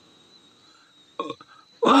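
A man's voice in a pause of talk: a short throaty vocal sound a little past a second in, then speech starting again near the end, over faint background hiss.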